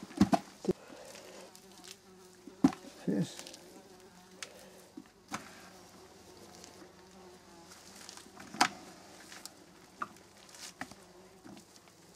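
An insect buzzing steadily and faintly, with a slightly wavering pitch. A few sharp clicks and knocks come from gloved hands working compost in a clay pot, the loudest about two and a half seconds in and again past the middle.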